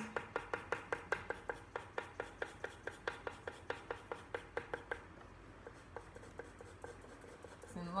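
Coloured pencil sketching quick, short fur strokes on paper, a rapid scratchy tapping of about five strokes a second. The strokes grow fainter after about five seconds.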